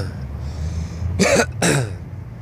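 A man coughing twice, short throat-clearing coughs a little over a second in, his throat irritated by cold air.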